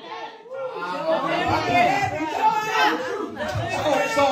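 Speech only: overlapping voices talking in a large room.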